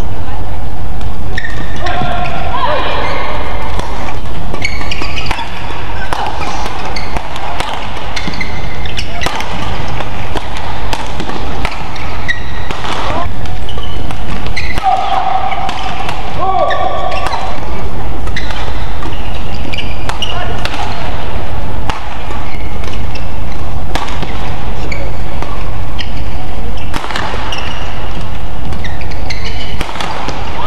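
Badminton rally sounds in an arena: repeated sharp racket strikes on the shuttlecock and short squeaks of shoes on the court, over steady crowd noise.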